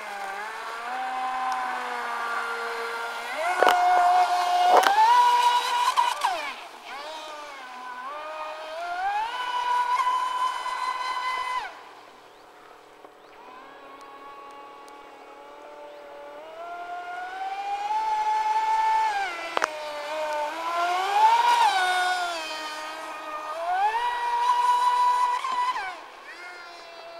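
Electric RC powerboat (MHZ Lizard) with a KB 45-77 brushless motor on a 6S pack, running at speed: a high motor whine that rises and falls in pitch with throttle and turns. It swells loud as the boat passes close, drops to a faint whine in the middle while it is far out, and is broken by a few sharp clicks.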